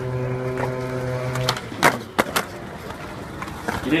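Skateboard on a stone plaza: a rolling rumble, then sharp clacks of the board popping and landing about two seconds in, and again near the end. A steady hum runs under the first second and a half.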